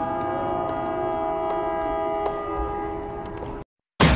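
A sustained chord of several steady tones held without change, with a few faint clicks, cutting off suddenly near the end.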